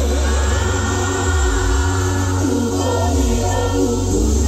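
Live gospel band playing with lead and backing vocals singing together over a strong bass line.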